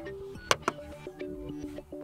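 Razer Hammerhead True Wireless earbuds faintly playing their power-on notification, a short sequence of steady tones that step in pitch, as they turn on when the case is opened. Two sharp clicks come about half a second in.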